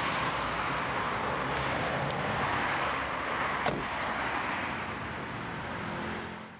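Steady road-traffic noise, with a single short knock a little past halfway.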